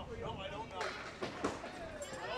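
Indistinct voices of people talking in a bowling alley, with a few sharp clatters about a second in, in keeping with candlepins being knocked down.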